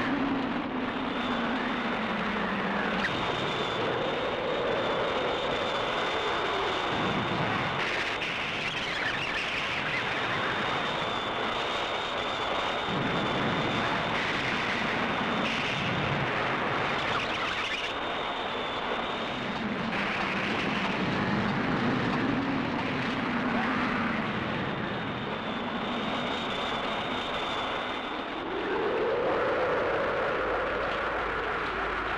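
Dense, continuous roar of television sound effects, with a howl that rises and falls in pitch every few seconds and a steady high whine above it, like a storm wind mixed with jet aircraft noise.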